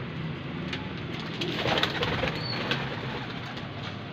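Domestic pigeons cooing in their loft, with a louder burst of scratchy clicks and rustling about halfway through.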